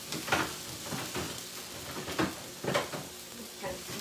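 Sliced bell peppers and onions sizzling in oil in a skillet as they are stirred, with several short scrapes of the utensil against the pan over a steady frying hiss.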